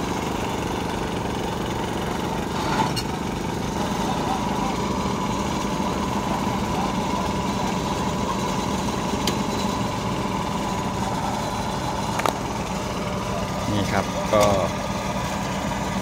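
A Toyota crane truck's engine idling steadily at an even pitch, with a few faint clicks and brief voices near the end.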